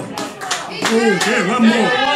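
Audience clapping that thins out within the first second, with a voice talking over it.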